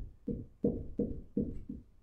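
A dry-erase marker writing on a whiteboard: about five short, separate strokes as a number and unit are written out.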